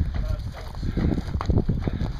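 Footsteps crunching on gravel at a walking pace, irregular, with wind rumble on the microphone.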